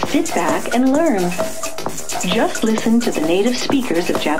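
Electronic dance music from a DJ mix: dense, clicky, clattering percussion under fragments of voice that glide up and down in pitch.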